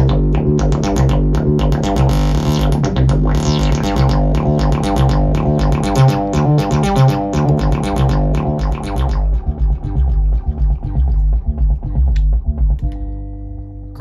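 Eurorack modular synthesizer sequence, with the Weston Precision Audio B2 kick/bass voice playing a melodic bass line under fast high percussion ticks. About nine seconds in the high percussion stops, and the bass line thins out and fades. Near the end it gives way to a steady held tone.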